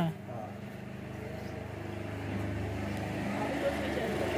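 A steady low motor hum that grows slowly louder, after a single spoken word at the start.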